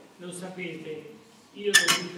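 A person speaking briefly, then a short, loud clinking clatter of hard objects near the end.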